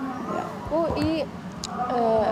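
Soft, low-level talking from a woman in an outdoor interview, with a brief high chirp about a second in.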